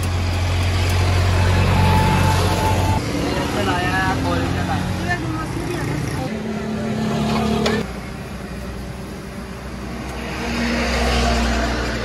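Road traffic close by: vehicle engines running and passing, with a low hum in the first few seconds and another swell of engine noise near the end.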